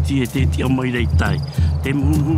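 A song with a voice singing over music with a repeating low bass line. A short, high, pulsing trill, like a cricket's chirp, sounds a little over a second in.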